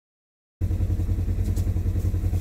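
Engine of a small farm utility vehicle idling with a steady low throb, heard from inside its cab. It cuts in suddenly about half a second in.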